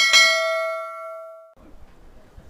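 Subscribe-button sound effect: a click followed by a single bell 'ding' that rings out and fades, cut off about a second and a half in. Faint low room noise follows.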